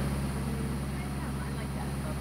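Steady low hum of a sailboat's engine running as the boat motors under way.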